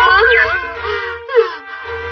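A cartoon boy's voice moaning in a daze, its pitch sliding up and down in long wavering glides, over steady background music.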